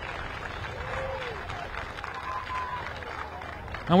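Crowd at a small football ground after a goal: a steady murmur with some applause and faint distant calls.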